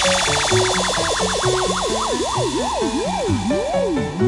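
Electronic dance music: a synth line warbles rapidly up and down in pitch, the wobble slowing down over a few seconds, over short repeating synth chord notes. A shouted "Woo! Yeah" vocal comes in at the very end.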